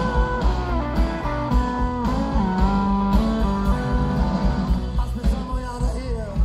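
Live rock band playing: electric guitar lines with bent, sustained notes over bass and drums, heard through an audience recording.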